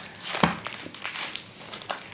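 Plastic biscuit wrapper crinkling and knocking on a wooden board as it is worked by mouth, with a sharper knock about half a second in.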